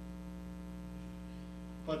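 A steady electrical hum: a few fixed low tones that do not change, over quiet room tone. A man's voice starts just at the end.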